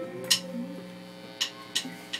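A pause in live band music: a low, steady amplifier hum with several short, sharp clicks scattered through it.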